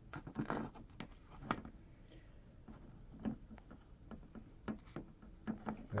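Scattered light taps and clicks from plastic tarantula enclosure parts being handled.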